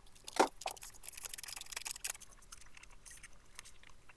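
Scissors cutting folded printer paper: a sharp snip about half a second in and another just after, then crisp paper rustling and sliding for about a second, with small clicks of paper being handled.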